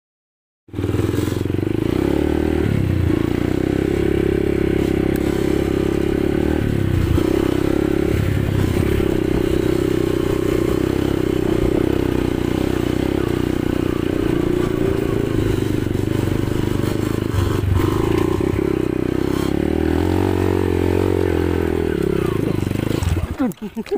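Dirt bike engine under way on a trail, starting abruptly less than a second in and running loudly throughout, its revs rising and falling with several brief drops as the throttle is eased off.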